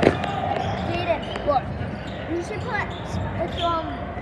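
Echoing gym din of crowd chatter with a basketball bouncing on the court, and a sharp thump right at the start.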